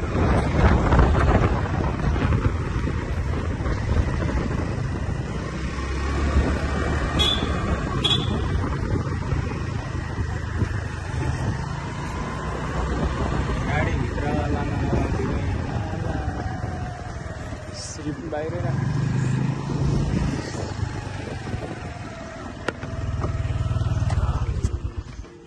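Wind buffeting the microphone over a motorcycle engine, heard while riding along a street.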